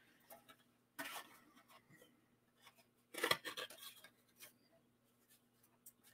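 Faint handling of paper and cardstock: short rustles and light taps as patterned paper and a glue bottle are handled over the work mat, loudest in a brief cluster about three seconds in, over a faint steady hum.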